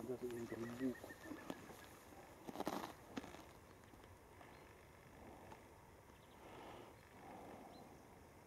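Mostly faint outdoor quiet. A person's voice is heard briefly in the first second, and there is a short, loud hissing noise close to the microphone about two and a half seconds in.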